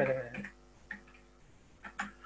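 A voice trails off in the first half second, then a few isolated clicks of computer keys being typed.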